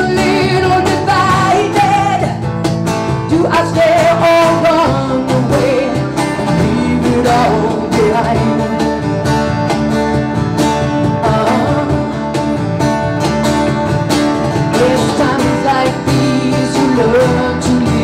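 Small live band playing a song: a woman singing into a microphone over electric bass guitar, acoustic guitar and cajon.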